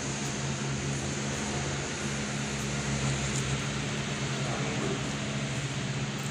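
Steady low mechanical hum from a running machine, an even drone with no breaks.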